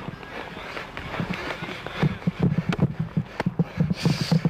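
Footsteps of people jogging on grass: a quick run of soft, low thuds, about four to five a second, growing denser in the second half.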